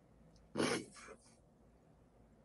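A woman holding back tears makes one short, choked sound at her mouth about half a second in, like a stifled sob or throat clearing. A fainter catch of breath follows it.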